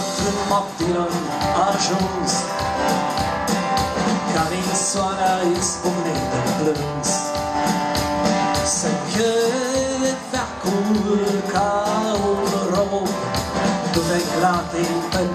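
Live acoustic folk music: a steel-string acoustic guitar strummed in a steady rhythm, with a sustained lead melody line over it.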